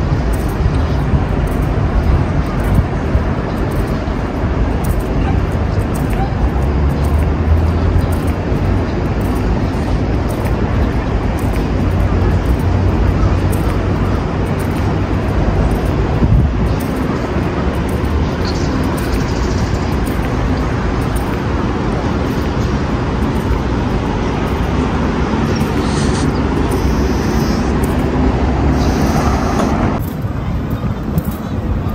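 Steady city road traffic noise, a continuous low rumble of passing vehicles.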